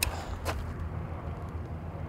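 Steady low outdoor background rumble with a faint hum, and one short click about half a second in.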